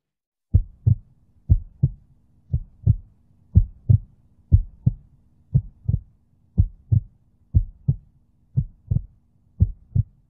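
Heartbeat sound effect: about ten lub-dub pairs of short low thuds, one pair a second, starting about half a second in over a faint low hum.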